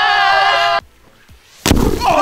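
Men yelling one long triumphant shout that cuts off under a second in. After a short quiet comes a sharp crack near the end as a clay pigeon is smashed.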